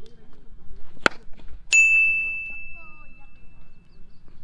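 A sharp crack of a cricket bat striking a leather ball about a second in. Moments later a loud, bell-like ding sound effect starts suddenly and rings on, slowly fading.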